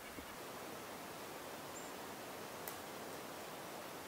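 Faint, steady outdoor background hiss with a couple of soft ticks and one brief high chirp about two seconds in.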